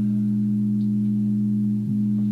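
Recorded music: a sustained low organ chord held between sung lines, moving to a new chord near the end.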